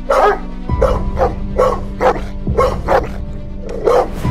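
A dog barking repeatedly, about eight short barks at uneven intervals, over dramatic background music with a held drone and a low pulse that comes in just under a second in.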